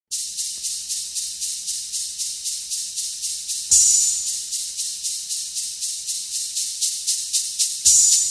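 Hip-hop drum-machine hi-hat ticking steadily about four times a second, with a louder cymbal hit about four seconds in and another near the end. This is the intro beat alone, before the bass line comes in.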